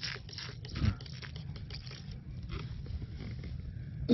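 Fingers scraping and crumbling damp soil away from a stone point in a dig hole: a run of small, irregular crunches and scrapes, with a brief low voice sound about a second in.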